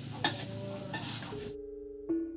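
Rice frying in a wok, a steady sizzle with a metal spatula clicking and scraping against the pan. About a second and a half in the sizzle cuts off abruptly and a steady held music note takes over.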